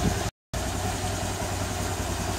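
Honda Air Blade 125 scooter's single-cylinder engine idling, a steady low hum, cut off to dead silence for a moment about a third of a second in.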